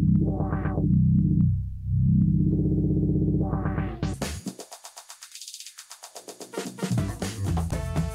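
Electronic dance track played through a DJ controller's channel filter effect, swept by its knob. The sound closes down to a muffled bass-heavy tone over the first two seconds, then turns thin, with the bass cut and only the top end left, around the middle, before opening back to the full mix.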